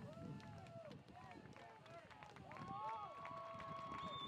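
Faint shouts and calls of players on a soccer pitch: several short rising-and-falling calls, then a longer held call near the end, over faint open-air field noise with scattered light knocks.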